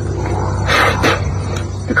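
Paper black-powder cartridge for a Civil War rifled musket being torn open with the teeth: a short ripping noise about a second in, over a steady low hum.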